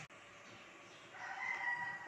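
A faint, drawn-out animal call on a steady pitch begins about a second in and holds.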